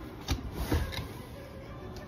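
A couple of short scuffing knocks, about a third of a second and three quarters of a second in, from sneakers moving fast on a hard shop floor, then steady background noise.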